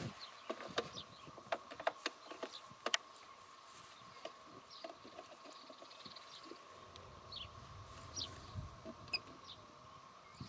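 Faint handling noise of a power cord being plugged in by hand: scattered light clicks and rustles, most of them in the first few seconds, over a quiet background with a faint steady high tone.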